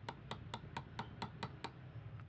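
Quick metal ticks, about four to five a second, as a thin steel tool pries and taps at the bushing and its retainer clip inside a stand fan's motor end housing.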